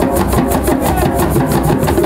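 Several djembe hand drums played together in a steady, fast rhythm, about five strokes a second.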